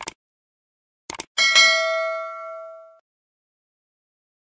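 A few short clicks, then a small bell struck once, ringing with several overtones and dying away over about a second and a half.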